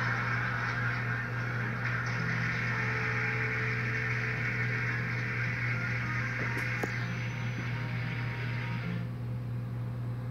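Sound from a small wall-mounted TV's speaker: a steady noisy wash over a low hum. The wash stops about nine seconds in, as the set goes off.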